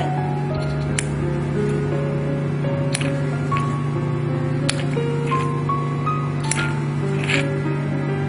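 Background music: a melody of separate held notes over a steady low drone, with a few sharp ticks scattered through it.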